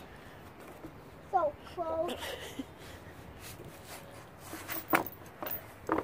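A young child's short, wordless vocal sounds of effort while struggling to climb, about a second and a half in, followed by a sharp click near five seconds.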